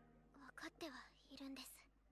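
Quiet, near-whispered speech in a young woman's voice: anime dialogue playing softly.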